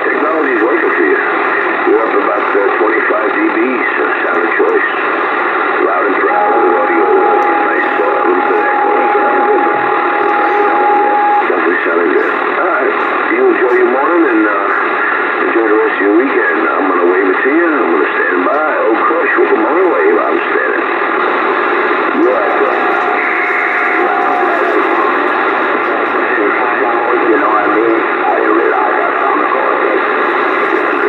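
Bearcat CB radio on AM channel 28 receiving voices that come through garbled and mixed with static, in the narrow, tinny sound of an AM radio speaker. A steady whistle tone cuts through from about six to eleven seconds in, and shorter ones come near the two-thirds mark.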